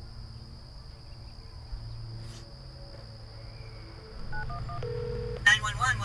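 Smartphone dialing 911: three short two-tone keypad beeps about four seconds in, then a brief ringback tone and a voice answering near the end. Crickets chirp steadily in the background.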